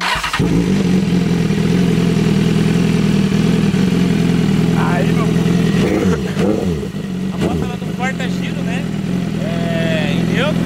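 BMW S1000RR inline-four sportbike engine starting with a sudden burst right at the start. It then idles steadily to warm up, with no revving.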